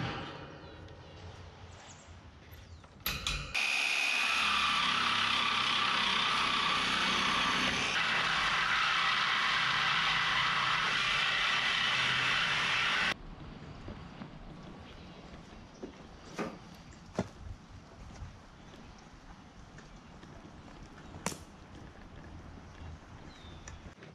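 Reciprocating saw cutting through a galvanized steel cattle panel: a brief start, then about ten seconds of steady loud sawing that stops abruptly. A few light knocks follow as the cut panel is handled.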